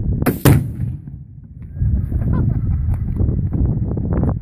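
A .30 calibre rifle shot, followed about a quarter second later by the heavier boom of a tannerite-filled spool exploding downrange, then a low rumbling noise.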